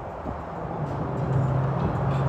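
Chevrolet C8 Corvette's V8 engine running as the car pulls up, a steady low note that comes in about a second in and grows louder.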